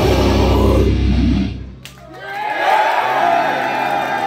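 Thrash metal band of distorted electric guitars, bass and drums playing the last bars of a song, stopping about one and a half seconds in. After a brief lull, the audience cheers, shouts and whistles.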